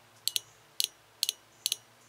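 Toyota 22RE fuel injector clicking as an injector-cleaner kit pulses it from a car battery: sharp double clicks about twice a second, the injector opening and closing, a sign that it is operating.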